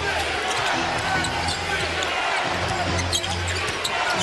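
Arena game sound: steady crowd noise with a basketball being dribbled on the hardwood court.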